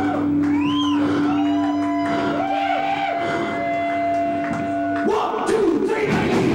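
Harmonica played into a vocal microphone: a held drone note under wailing notes that bend up and down. The full rock band with drums comes in about five seconds in.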